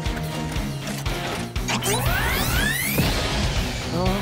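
Cartoon background music with a sound effect for the rescue vehicle shrinking: a rising sweep, several pitches climbing together, from a little under two seconds in to about three seconds in.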